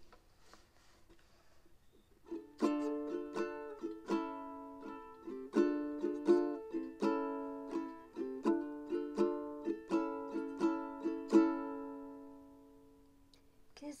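Ukulele strummed in a run of chords as a song's intro, starting about two seconds in and letting the last chord ring out and fade near the end.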